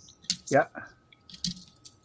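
A man's short "yeah", then a few faint, scattered small clicks.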